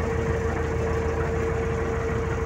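Combine harvester running steadily while cutting wheat, heard from inside the cab: an even machine drone with a steady hum.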